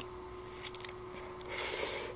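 A short slurp of instant ramen noodles near the end, after a few faint clicks, over a steady faint hum.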